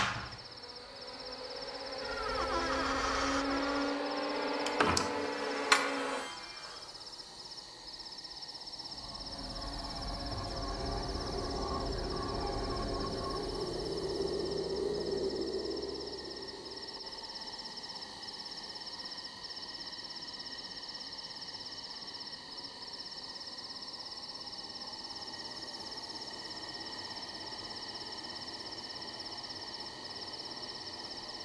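Night insects chirring steadily in a high, unbroken band. In the first six seconds a door creaks open with a couple of sharp clicks, and about ten seconds in a low rumble swells and then fades out by sixteen seconds.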